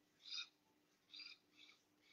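Near silence with a few faint, short bird calls, about three within two seconds, over a faint steady hum.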